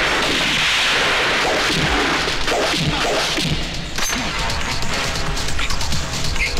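Foley for a film fist fight: a long rushing whoosh, then a quick run of punch and smash impacts, a hard one about four seconds in, over the background score.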